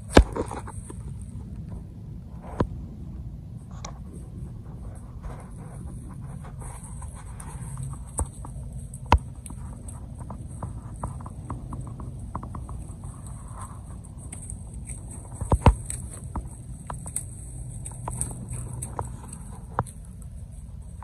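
Quiet outdoor night ambience: a steady low rumble and a thin, high-pitched hiss, broken by scattered sharp clicks and taps, the loudest just after the start and again about three quarters of the way through.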